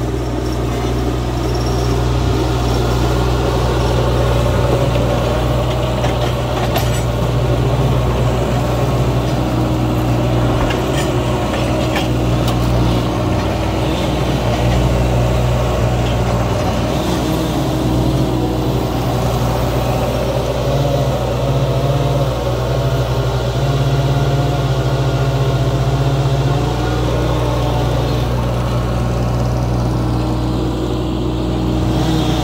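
Vermeer tracked mini skid steer's engine running steadily while the machine moves logs with its grapple and drives across the yard. A few light clicks or knocks come through over the engine.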